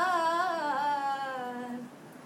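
A woman singing unaccompanied: one long phrase whose pitch wavers and drifts lower, stopping shortly before the end.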